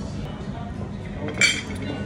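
A single sharp clink of crockery, like a plate or bowl set down on a table, about one and a half seconds in, with a brief ring.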